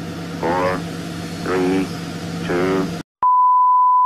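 A voice counts down over a low steady hum, then the sound cuts out and, after a click, a steady 1 kHz test-tone beep starts about three seconds in: the reference tone that goes with television colour bars.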